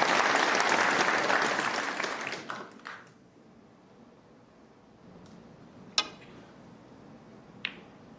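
Snooker audience applauding a shot, the clapping dying away within about three seconds; then a hushed hall with two sharp clicks about a second and a half apart.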